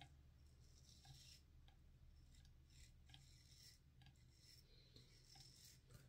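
Faint scraping of a Feather SS straight razor cutting stubble on a lathered neck, in a series of short, separate strokes.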